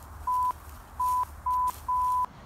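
Four short electronic bleeps at one steady pitch, with brief gaps between them, the last one longer: a censor-bleep style tone.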